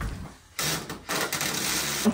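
Cordless drill running in two short bursts, a brief one about half a second in and a longer one from just past a second, backing screws out of a slatwall panel.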